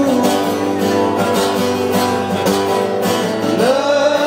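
Acoustic guitar strummed in a steady rhythm in a live solo performance, with a man's singing voice rising back in near the end.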